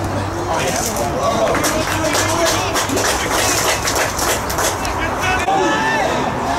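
Footballers shouting and calling to each other on the pitch during open play, with scattered sharp knocks.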